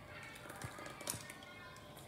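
Faint background voices and music, with a light tap about a second in.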